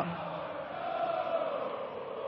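Arena crowd chanting or singing together: a steady, blended wash of many voices holding a slowly wavering note.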